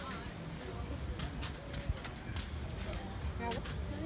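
Footsteps of people walking on a paved path, heard as scattered short steps over a steady low rumble on the microphone.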